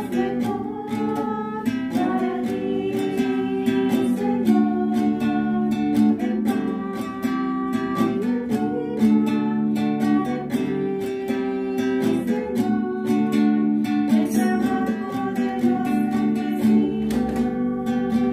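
Offertory hymn: acoustic guitar strummed in a steady rhythm, accompanying singing.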